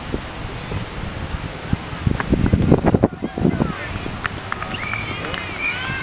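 Indistinct voices of players and spectators at an outdoor football pitch, louder about two to three and a half seconds in, with a few high calls near the end and a low rumble of wind on the microphone.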